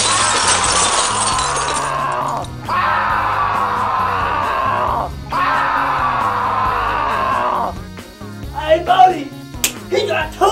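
Window glass shattering with a sudden crash that lasts about two seconds, followed by two long screams, each sliding slightly down in pitch. Laughter breaks out near the end.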